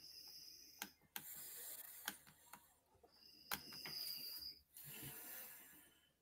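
Faint clicks and short bursts of soft rattling handling noise, with near silence between them.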